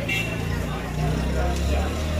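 Busy street background: a steady low hum like a vehicle engine running, with people talking nearby.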